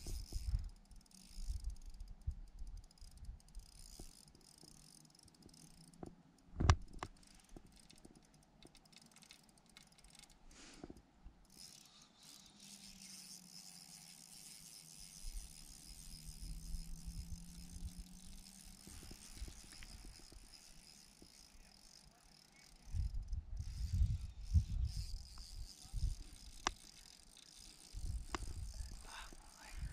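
Wind buffeting the microphone in irregular low gusts, strongest near the end, with one sharp knock about seven seconds in and a faint steady hiss in the background.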